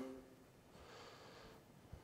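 Near silence: room tone with a faint soft hiss about a second in.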